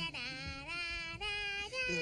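A high-pitched character voice singing wordless, sliding notes, holding each one and stepping higher near the end.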